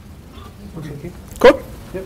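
A person's short, loud vocal sound about one and a half seconds in, with fainter sounds before and after it.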